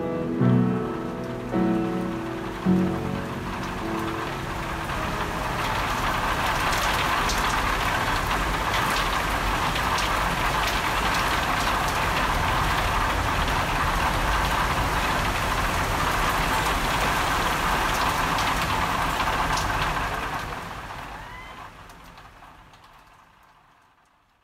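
A last few piano notes, then a steady hiss of falling rain with faint scattered drop ticks, fading out over the last few seconds.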